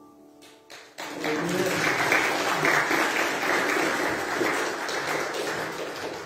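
The last piano chord dies away, and about a second in a church congregation breaks into applause of many hands clapping. The applause lasts about five seconds and tapers off near the end.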